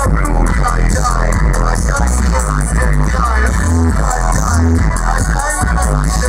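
Loud music with a deep, heavy bass line played through a sound system's speaker stack.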